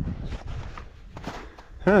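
Footsteps on snow-covered, rocky ground: a few uneven steps, then a man says a brief "eh" near the end.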